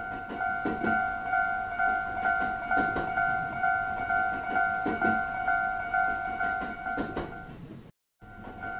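Japanese railroad crossing bell ringing steadily, about two dings a second, while a train passes with a regular clatter of wheels over the rail joints. The sound cuts off just before the end.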